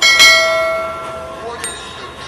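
A single loud bell-like strike from the trailer's soundtrack, ringing with many overtones and fading away over about a second and a half.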